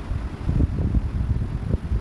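Irregular low rumble buffeting the microphone, like wind noise, rising and falling in gusts.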